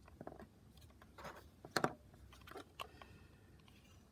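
A few small plastic clicks and taps as the yellow end cover of a BioLite PowerLight lantern is lifted off its casing and handled, the loudest a little before two seconds in.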